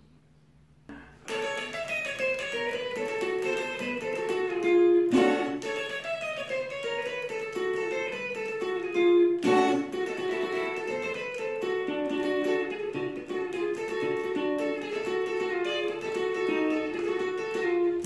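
Solo guitar picking a fast, repeating bikutsi figure in 6/8 time, played from memory to recreate the sound of the mvet harp-zither. It starts after about a second of quiet and has a few sharp accented strokes.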